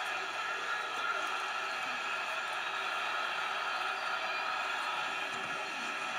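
Steady crowd noise from a televised football game, with faint, indistinct voices underneath.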